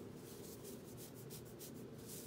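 Thick macrame cord being looped through a knot and pulled by hand: a quick series of faint scratchy rustles as the rope rubs against itself.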